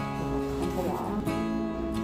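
Background music: acoustic guitar strumming with held chords.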